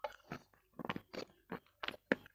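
Close-miked mouth sounds of a person eating a thick white cream: a quick run of short chewing and lip clicks, about six in two seconds.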